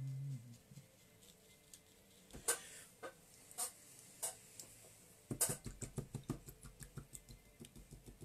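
Light clicks and taps of paintbrushes and painting things being handled on a desk. There are a few separate taps, then a quick run of clicks, about four a second, for a couple of seconds.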